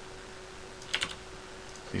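Computer keyboard keys being pressed, a quick pair of clicks about a second in, over a faint steady hum.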